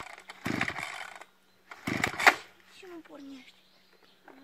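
Two-stroke brush cutter being pull-started: the recoil starter cord is yanked twice, about half a second and two seconds in, and each pull spins the engine over in a quick rough rattle, but the engine does not catch.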